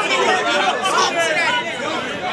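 Crowd chatter: several people talking and calling out over one another at once.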